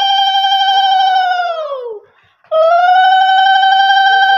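A loud, steady, shrill whistle-like tone. About a second and a half in, its pitch sags and it stops for half a second, then it starts again and rises back to the same pitch.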